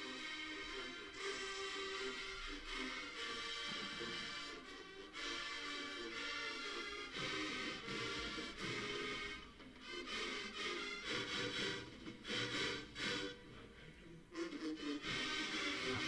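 Marching band brass and winds playing full held chords, which break into short, separated hits over the last several seconds.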